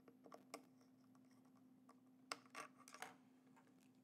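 Near silence with a few light clicks and taps of test leads and wires being handled on a tabletop, over a faint steady hum.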